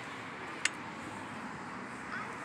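Steady outdoor background noise with a single short, sharp click about two-thirds of a second in.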